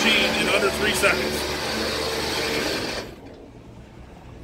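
Electric Mulch Mate augers running, pulling a tarp of mulch into the machine with a steady mechanical whir that cuts off about three seconds in.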